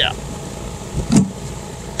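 Knocks from a plastic access-panel ring being pressed into a hole cut in a fibreglass boat hull: two close knocks a little after a second in, over a steady low hum.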